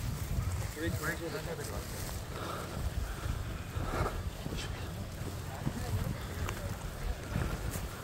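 Wind buffeting the microphone in a low, steady rumble, with faint voices in the background.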